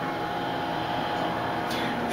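Steady mechanical hum with a faint held tone in it.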